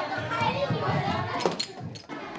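Children playing and chattering, with a sharp knock about one and a half seconds in.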